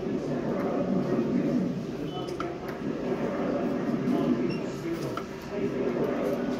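Indistinct voices murmuring in the background, with a few faint short clicks.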